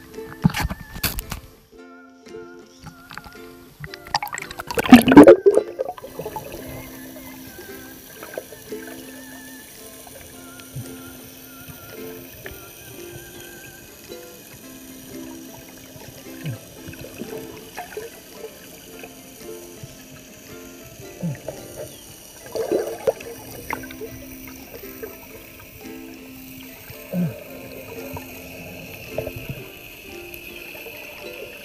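Water surging loudly around an action camera as it goes under the sea surface about five seconds in, followed by muffled underwater sound with scattered small pops and crackles. Soft background music with sustained notes plays throughout.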